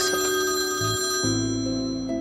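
Mobile phone ringtone playing a melodic tune of held notes, which change pitch a little past a second in.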